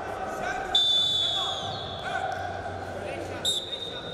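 Referee's whistle: a loud, steady blast of about a second, starting about a second in, then a second, shorter blast near the end as the wrestling bout is restarted. Voices in the arena run underneath.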